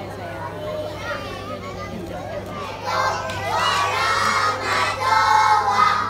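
Low murmur of voices in a hall. From about three seconds in, a group of young children start chanting loudly together, over a steady low hum.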